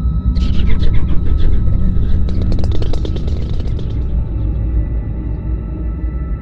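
Experimental electronic music: a deep sustained drone with steady high tones, overlaid from about half a second in by a dense, rapid flurry of clicks that fades out at about four seconds.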